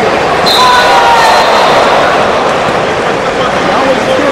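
Large arena crowd cheering and shouting over a wrestling takedown, a dense steady roar of many voices. A thin high tone comes in about half a second in.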